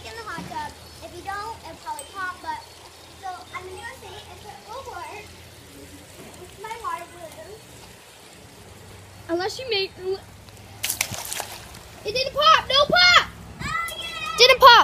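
Children's voices talking and calling at a distance, louder near the end. About eleven seconds in there is a short burst of noise lasting about half a second.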